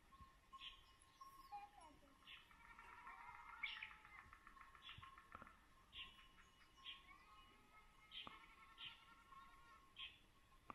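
Faint birdsong: short high chirps repeating about once a second, with a quick trill a few seconds in.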